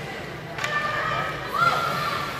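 Ice hockey play in a rink hall: a sharp crack from the stick and puck action about half a second in, followed by a held, raised call from a voice that bends near the end.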